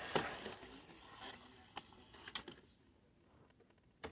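Faint handling noise: a soft rustle that fades away, a few light clicks around the middle, then near silence.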